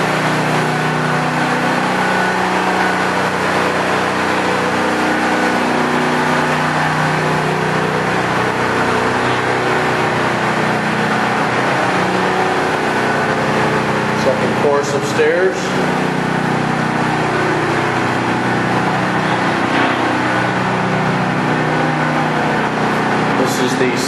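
A generator running steadily in the background, a constant engine drone with a slightly wavering pitch. A couple of brief knocks come about fifteen seconds in.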